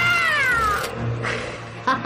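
A long cat-like yowl, one sustained high call that bends up and then falls in pitch, ending about a second in, over background music.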